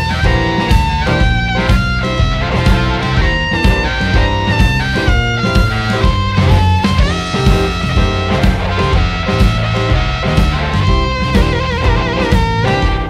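Electric blues band playing an instrumental break in a shuffle: a lead line with bent notes over bass and drum kit, with a rising bend about seven seconds in.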